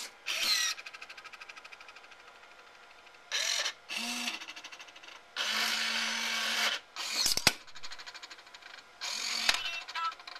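Small geared electric motors of an Asahi Beerbot toy robot working a soda can, whirring in separate bursts with a sharp click about seven seconds in. A fast run of ticks fades away over the first few seconds.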